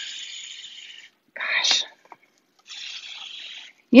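A woman's soft breathy, whispered vocal sounds while she hesitates. A hiss trails off, then a short breathy burst comes, then a fainter breathy stretch before she speaks again.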